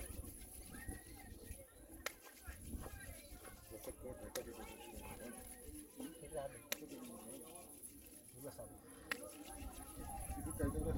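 Faint voices in the background, with four sharp clicks spaced about two seconds apart.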